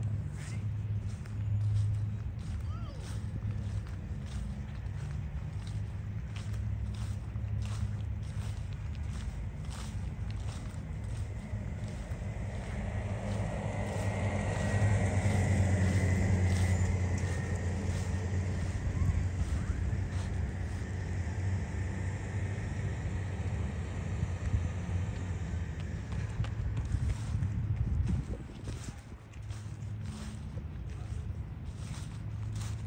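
Footsteps of a person walking, with short clicks and crunches that are thick in the first ten seconds and again near the end, over a steady low rumble. About halfway through, a louder swell of noise rises and fades over a few seconds, like a vehicle passing on a road.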